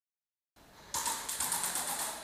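An airsoft gun firing a rapid full-auto burst: about a second of sharp cracks, roughly eight to ten a second, starting about a second in.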